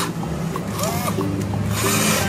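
Plastic toy excavator scraped along sandy, gritty ground in short strokes, about one a second, over background music with steady held notes.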